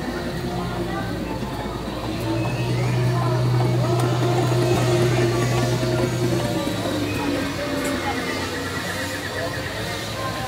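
Outdoor queue ambience: people's voices and background music, with a steady low hum that swells for a few seconds in the middle and then dips slightly in pitch.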